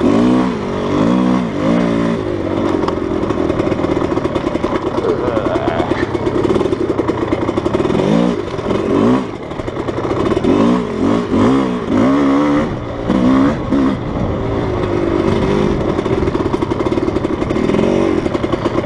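GasGas enduro dirt bike engine being ridden hard on a trail, its pitch climbing and dropping in quick repeated swells as the throttle is opened and closed, with steadier running in the middle stretch.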